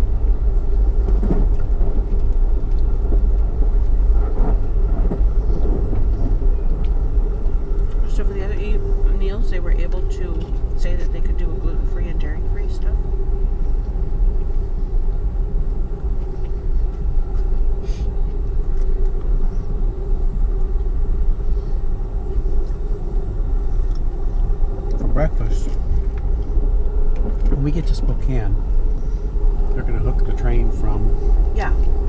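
Steady low rumble of a moving Amtrak passenger train heard from inside the car, with a steady hum over it. Faint voices come in about a third of the way through and again near the end.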